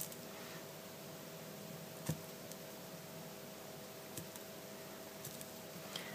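Quiet room tone with a faint steady hum, broken by a few soft taps as a rubber stamp is pressed onto and lifted from the edge of a small canvas, the clearest about two seconds in.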